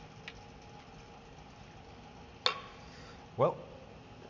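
Quiet workshop room tone with a faint steady hum, broken by one sharp click about two and a half seconds in and a fainter click near the start.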